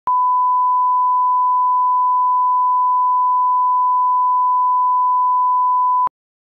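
Broadcast line-up tone: a steady 1 kHz reference tone played with the colour bars at the head of the tape, one unchanging pitch that cuts off abruptly at the end. It marks the start of the programme and serves for setting audio levels.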